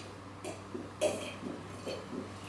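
A man drinking from a glass: a few soft swallowing sounds, with one short spoken word about a second in.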